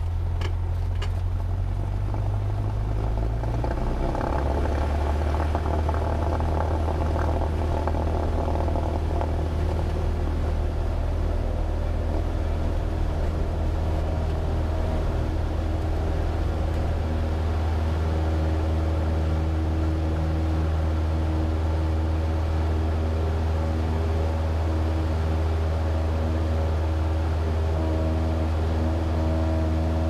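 Cessna 172's piston engine heard from inside the cockpit, going up to full power about four seconds in for the takeoff roll and then running steadily at full throttle through the lift-off and climb-out.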